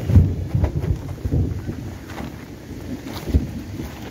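Wind buffeting and handling noise on a handheld phone's microphone: uneven low rumbling gusts broken by a few sharp knocks.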